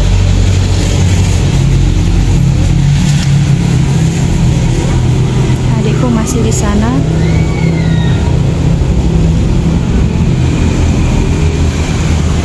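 A motor vehicle engine running steadily close by, a loud low rumble, with faint voices in the background.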